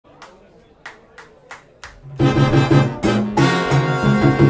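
Salsa band recording opening with a few sparse, sharp percussion hits. About two seconds in, the full orchestra comes in loudly over a bass line.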